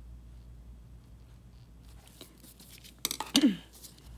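Quiet handling of an acrylic nail brush and nail tip over a steady low hum, with a few faint clicks. About three seconds in comes a brief cluster of sharp clicks and a short wordless vocal sound falling in pitch.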